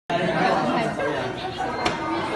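Several people chattering over one another, no clear words, with one sharp knock just before the end.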